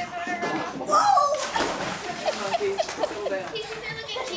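Young girls talking and shrieking, with a high-pitched cry about a second in and a short rush of noise just after it.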